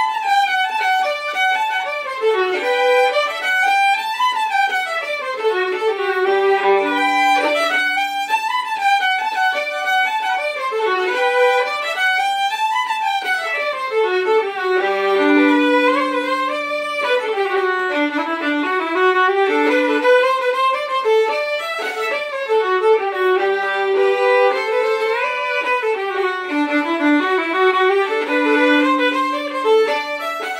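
Two fiddles playing an Irish jig together, a quick run of notes in phrases that come round about every four seconds, with long held low notes beneath the melody.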